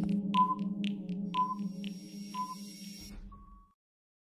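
Countdown timer sound effect: clock-like ticks about twice a second with a short beep about once a second over a low steady hum. It fades out about three and a half seconds in.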